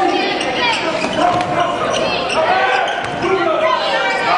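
Basketball being dribbled on a hardwood gym floor, a few sharp bounces, over the steady chatter of a crowd in a large gym.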